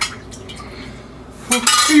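Metal serving spoon clinking and scraping against a cooking pot as food is dished onto a plate, with a sharp clink at the start and quieter scraping after. A voice comes in near the end.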